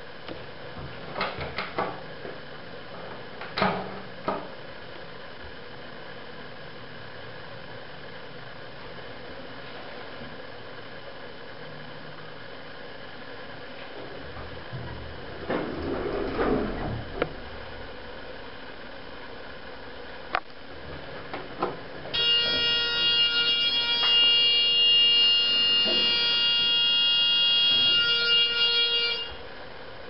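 Otis hydraulic elevator car held at its floor: a few clicks, the sliding doors moving about halfway through, then a loud steady electronic buzzer for about seven seconds that cuts off suddenly. The car does not leave the floor, a glitch the uploader thinks could be a door malfunction.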